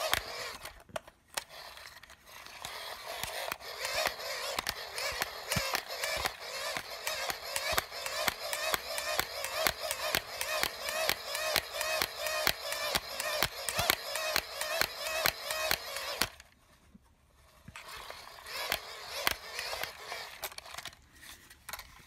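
Hand-crank charging dynamo of an Ideation GoPower solar flashlight being cranked, giving a fast, even clicking whir. The cranking pauses briefly about two-thirds of the way through and then starts again, while the flashlight's own radio plays music.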